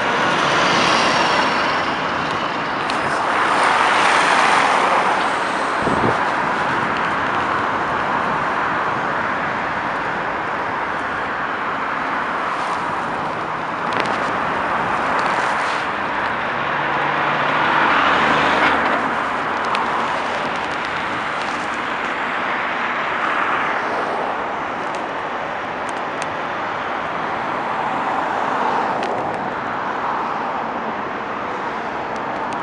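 Busy multi-lane highway traffic: a continuous roar of tyres and engines from cars and heavy trucks, swelling several times as vehicles pass close by.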